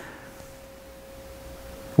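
A faint, steady hum on a single held tone over quiet room tone.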